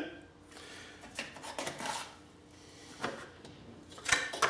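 Faint, sparse scrapes and light clicks of hand work with a plastic tub of wet grout and a putty knife, as grout is about to be packed into a plastic drill battery case. There are three or four brief sounds spread over a few seconds, with quiet between them.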